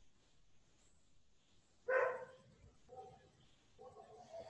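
Near silence broken about two seconds in by a brief pitched call, like a voice or an animal's call, followed by a fainter, shorter one about a second later.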